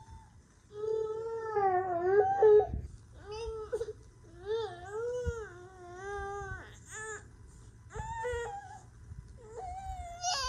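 Infant crying in a run of drawn-out, wavering wails with short breaks between them, starting about a second in.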